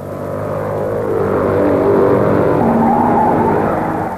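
Engines of 500cc Formula 3 racing cars passing, a single-cylinder motorcycle-engine drone that swells to its loudest about halfway through and then fades.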